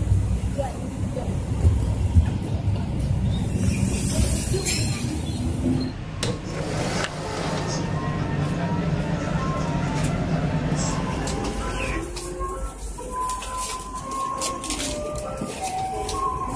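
Passenger train and platform noise, with a low rumble strongest in the first few seconds, under background music and indistinct voices.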